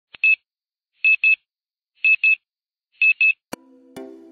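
Electronic beeping: four pairs of short, high beeps, one pair about every second. Near the end a sharp click is followed by the first sustained notes of music.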